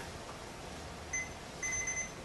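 Two electronic beeps over quiet room tone: a short one about a second in, then a longer one near the end, both steady and high-pitched.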